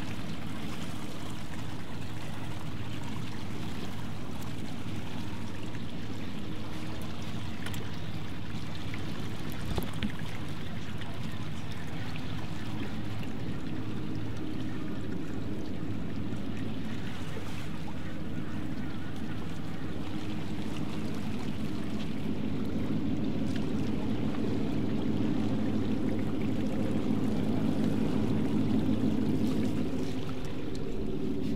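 A boat engine running steadily with a low hum, with water sloshing around the hull. The engine grows louder over the last several seconds.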